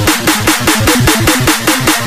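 Dubstep sample-pack demo music: a fast, evenly repeating stutter of drum and bass hits, about seven a second, with a distorted, growling synth bass.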